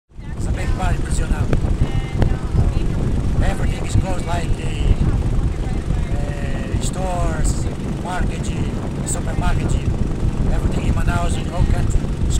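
Steady low rumble of a small motorboat under way, with wind on the microphone, beneath a man talking.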